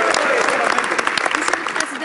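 Members of Parliament applauding, a dense patter of hand claps with a few voices mixed in at first. The clapping thins out and fades toward the end.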